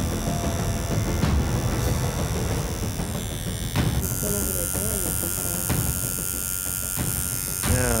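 Electric tattoo machines buzzing steadily.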